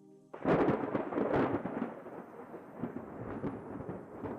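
Thunder: a sudden crack about a third of a second in, then a long rolling rumble with crackles that slowly fades.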